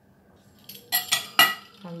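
A stainless-steel pizza cutter set down on a glass baking dish: a few sharp metal-on-glass clinks with a ringing tone, the loudest about a second and a half in.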